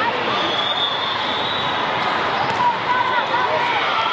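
Hall din at a volleyball tournament: many voices talking and calling over each other, with balls thudding on the courts and a sharper knock about two and a half seconds in.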